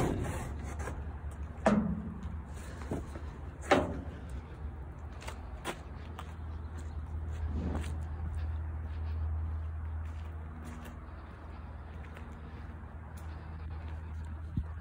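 A few sharp knocks, two louder ones in the first four seconds and fainter ones after, over a steady low rumble.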